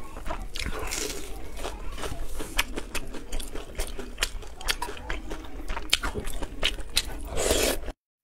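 Close-miked eating sounds: crisp crunching bites and wet, clicking chewing of a crispy fried piece. A slurp of noodles comes near the end.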